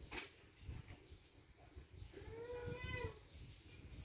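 A single drawn-out animal call lasting about a second, starting about halfway through, over a faint low background rumble; a short click comes just at the start.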